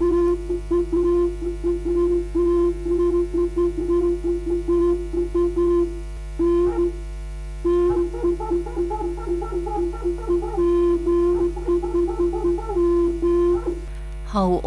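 Opening theme music of a radio news bulletin: a reedy wind-instrument melody of short notes over a held drone note, which breaks off briefly a little before halfway. A steady low mains hum runs underneath.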